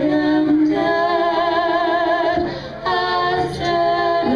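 Two women singing together through handheld microphones, holding long notes with vibrato, with a short break a little past halfway. A steady low tone sounds underneath.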